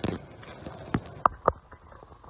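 Handling noise from a dead black bear with an arrow in it being moved by hand: a short rustle at the start, then three sharp clicking knocks between about one and one and a half seconds in.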